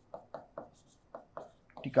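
Stylus writing on an interactive display screen: a quick series of short taps and scratches, about four strokes a second, as Hindi letters are written.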